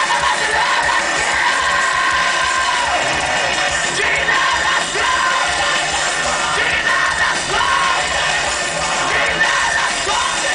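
Live rock band playing loud, recorded from inside the crowd, with the audience yelling and singing along.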